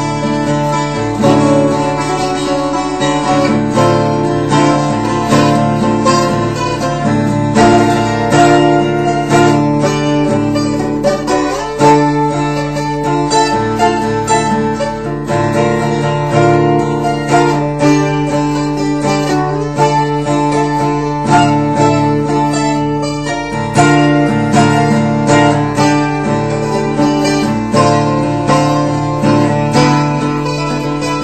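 Unplugged 12-string acoustic guitar playing arpeggiated chords in D, with open strings left ringing: a steady stream of picked notes over a sustained low bass note.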